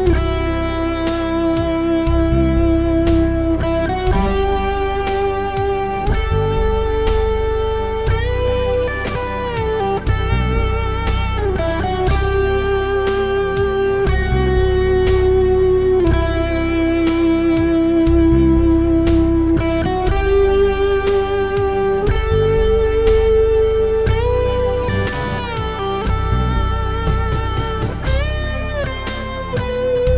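Suhr Custom Modern electric guitar through a Laney Ironheart amp playing a slow melodic lead: long sustained notes with string bends and vibrato, over a steady beat.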